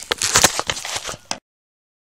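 Loud, irregular crackling and rustling right on a phone's microphone, typical of handling or something brushing against it. It cuts off abruptly about one and a half seconds in to dead silence, where two clips are edited together.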